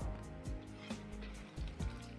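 Background music over the sizzle and crackle of starch-coated pork pieces frying in a wok of hot oil, on their second, hotter fry to crisp the outside.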